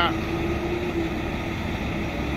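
Heavy diesel truck engine of a 2017 Peterbilt 579 idling with a steady low drone.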